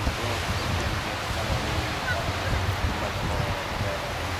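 Wind blowing against the microphone, with a steady wash of sea surf underneath.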